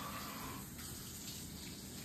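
Kitchen tap running steadily while hands are rinsed under it.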